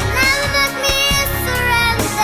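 A young girl singing into a handheld microphone over backing music with a beat, her sung notes sliding between pitches.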